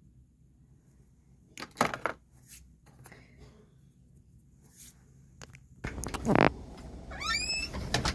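A house door being opened to the outside. A few soft handling clicks come first, then about six seconds in a steady low outdoor background noise comes up, with one brief loud sound and, just after it, a quick run of rising high-pitched squeaks.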